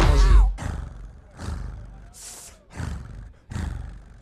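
A loud looped bass beat cuts off about half a second in. A man then voices a run of short, growling cat-like yowls into a microphone, each a separate burst.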